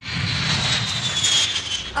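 Jet airliner engines: a steady rush of noise over a low rumble, with a high whine that slowly falls in pitch. It starts abruptly.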